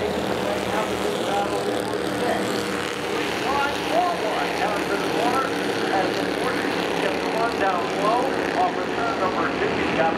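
Several Bandolero race cars' small engines running at speed around the oval, a continuous steady drone with no single sharp event.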